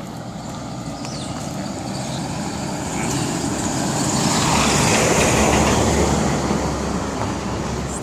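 An SUV driving slowly past close by, its engine and tyre noise building to a peak about five seconds in, then fading.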